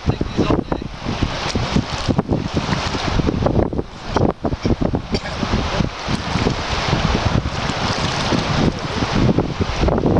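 Wind buffeting the microphone: a loud, gusting rush that dips briefly about four seconds in.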